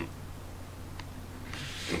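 Quiet pause: a low steady hum, one faint click about halfway, and a soft hiss like a breath just before talking resumes.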